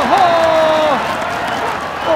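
A man's voice holding one long drawn-out exclamation for about a second, over crowd noise and applause; the voice then stops and only the crowd goes on.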